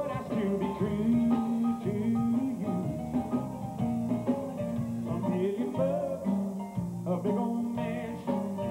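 Live country band playing an instrumental passage of a song, with guitars and bass guitar to the fore and no lead vocal.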